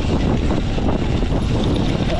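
Wind rushing over the camera microphone, with rattling knocks from tyres and chassis, as a Sur-Ron electric dirt bike rides fast over a bumpy dirt trail. The sound is loud and steady.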